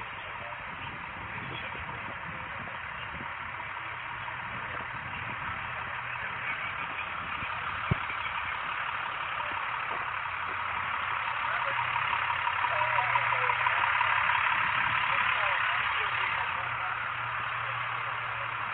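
A vehicle engine idling with a steady low hum, growing louder in the second half, with one sharp click about eight seconds in.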